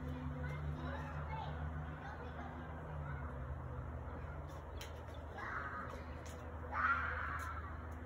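Children's harsh growling calls, heard twice in the second half, the second one louder, over a low steady hum.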